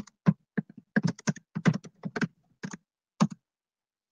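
Typing on a computer keyboard: a run of irregular keystrokes that stops a little over three seconds in.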